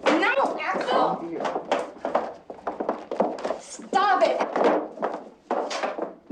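A man and a woman shouting and screaming without words as they struggle, with thuds from the scuffle.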